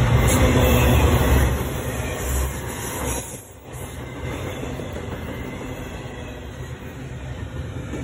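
Double-stack container train rolling past close by: the steady rumble and rattle of its well cars on the rails. It is loudest in the first second and a half, then eases, with a brief drop about three and a half seconds in.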